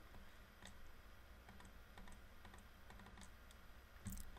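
Near silence: room tone with a dozen or so faint, scattered clicks of a computer mouse and keys.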